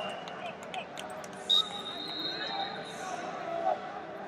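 Many voices murmuring across a large wrestling hall. About one and a half seconds in, a sharp high-pitched tone sounds, loud at first and then held more quietly for about a second and a half.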